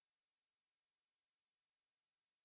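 Silence: the soundtrack is muted, with no audible sound at all.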